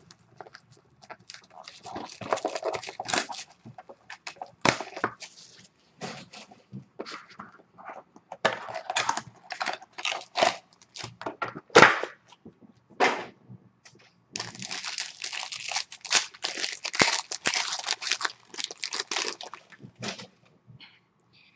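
Plastic shrink-wrap and packaging of a trading-card box being torn open and crinkled, in irregular crackling bursts with one sharp snap about midway, followed by a long dense stretch of crinkling near the end.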